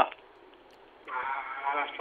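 About a second of near silence, then a caller's voice coming in thin and narrow over a telephone line.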